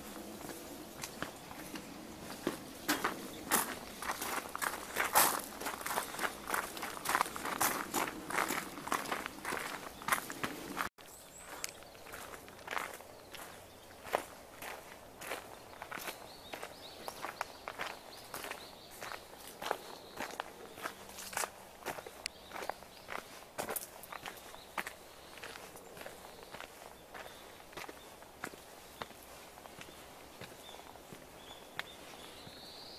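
Footsteps of a walker on a gravel path, a fast irregular run of crunches. An abrupt cut about eleven seconds in drops the steps to a quieter level for the rest.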